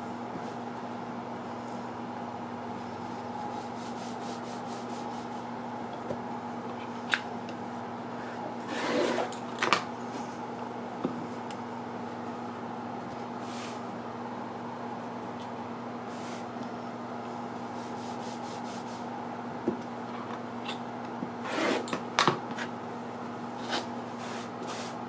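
Rotary cutter strokes cutting through quilt batting and backing along a trimming ruler on a cutting mat: a few short rasping cuts, bunched near the middle and again near the end, with occasional light clicks as the ruler is handled, over a steady low hum.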